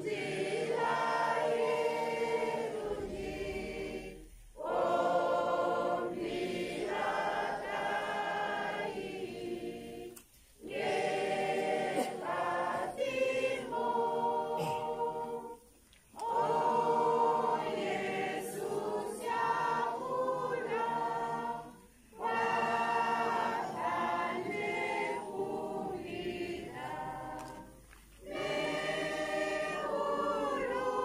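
A group of women and men singing a hymn together, unaccompanied, in phrases of about six seconds with a short pause for breath between each.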